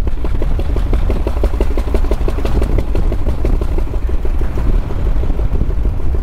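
The Flying Millyard's 5-litre V-twin, built from Pratt & Whitney Wasp radial cylinders, runs at low revs on the road with a steady, even beat of firing pulses. It sounds more like a steam engine than a motorcycle.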